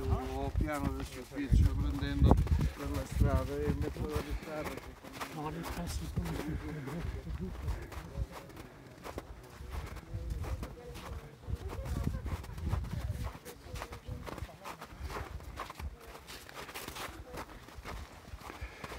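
People talking during the first few seconds, then footsteps on snow, with many short steps over a low rumble.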